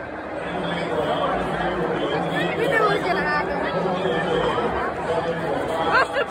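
Chatter of a baseball stadium crowd: many overlapping voices with no single voice standing out, growing a little louder about half a second in.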